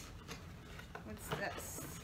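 Cardboard packaging being handled as a small box is opened and its insert pulled out: light scrapes and taps, with a rustle of paper or card sliding near the end. A brief voice sound falls in the middle.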